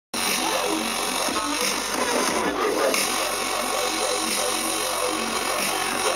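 Loud live electronic bass music from a festival sound system, mixed with crowd voices into a dense, steady wall of sound.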